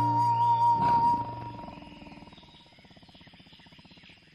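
A short held musical chord, then a tiger's growl that fades away over about three seconds.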